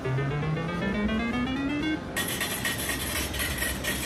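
Video poker machine win tone rising in steps for about two seconds, then its ticket printer running. The machine is automatically cashing out a $15 voucher.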